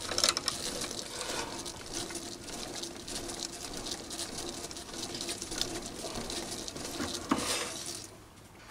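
Chinese mini lathe running under power while an HSS combined tap and chamfer tool in a spring-loaded tailstock holder cuts a thread into the end of the turning bar. It gives a steady faint hum with a fast rattle of clicks, and there is a louder stretch about seven seconds in.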